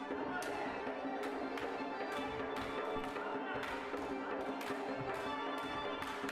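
Dance music with steady held notes playing under frequent, irregular sharp clacks of metal swords striking one another in a staged sword fight.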